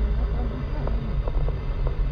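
Car driving slowly on an unpaved dirt road, heard from inside the cabin: a steady low rumble of engine and tyres, with a few faint short ticks.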